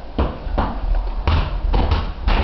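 A series of dull thuds, about four in two seconds at uneven spacing, over a steady low hum.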